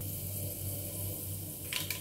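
Cumin seeds and other tempering spices sizzling steadily in hot oil in a non-stick kadai, a tempering (popu) being fried. The hiss cuts off suddenly near the end.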